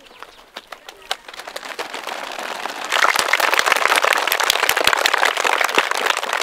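A group of children clapping to imitate a rainstorm: scattered claps at first, building about halfway through into loud, dense clapping.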